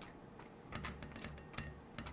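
Flat plastic scraper scraping and tapping along the edge of a plastic capsule-filling plate, clearing excess cinnamon powder into a bowl. The sound is faint: a few light clicks and short scrapes.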